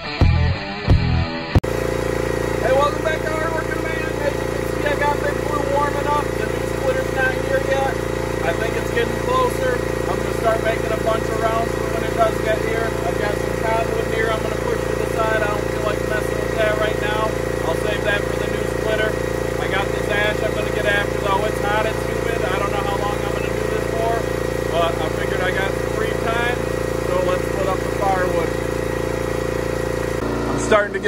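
The last of a rock guitar intro ends about two seconds in, then the log splitter's small engine idles steadily and evenly.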